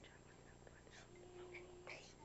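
Faint whispering, with soft hissy bursts about a second in and near the end, over a very quiet background.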